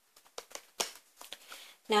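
Tarot cards being handled: a scatter of short, light clicks of card stock. A woman's voice starts again right at the end.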